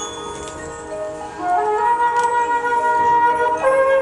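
High school marching band playing a slow passage of long held notes, growing louder about a second and a half in.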